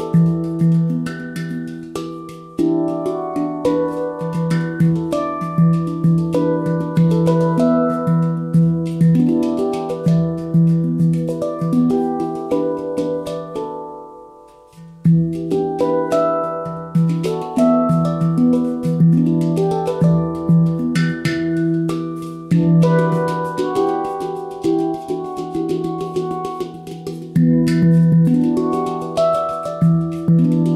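Ayasa handpan in E Amara (E minor) tuning played with the fingers: ringing steel notes in quick, rhythmic runs over a deep recurring bass note, with sharp finger strikes. About halfway through, the playing stops and the notes ring away for a second or so before a strong stroke starts it again.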